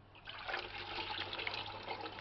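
Water sloshing and running in a bucket as a hand and a metal tumbler move through it and lift back out, water running off them.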